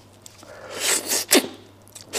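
Close-miked eating of braised duck head: a loud sucking slurp swells up about halfway through and ends in a sharp click.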